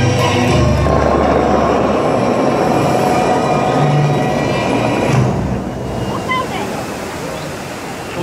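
The show music ends about a second in, then the Dubai Fountain's tall water jets shoot up and fall back into the lake, making a loud, steady rush of water and spray. The rush dies down over the last few seconds.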